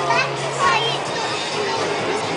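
Children's voices chattering and calling out in high, rising tones, over a steady low hum and faint background music.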